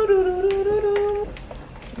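A woman humming one drawn-out, slightly wavering note that stops about a second and a quarter in.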